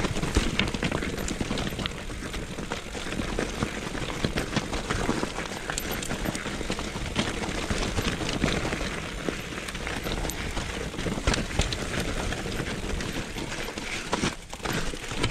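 Mountain bike descending a rocky singletrack: tyres rolling over loose stones and gravel, with frequent knocks and rattles from the bike over the bumps.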